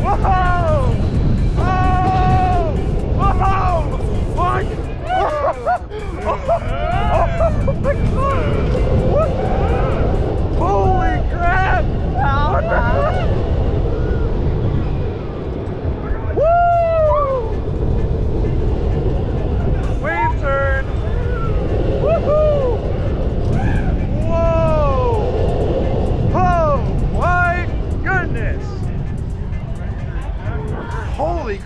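Riders screaming and whooping on a launched steel roller coaster, in repeated rising-and-falling yells, over a constant heavy rush of wind and train rumble.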